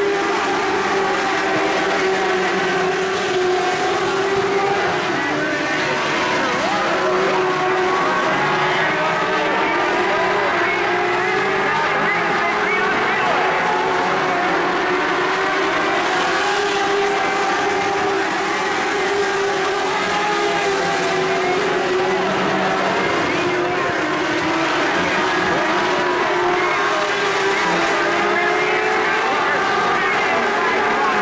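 Several Mod Lite dirt-track race cars' engines running together at low speed, a steady drone of overlapping engine notes whose pitches waver slightly as individual cars ease on and off the throttle.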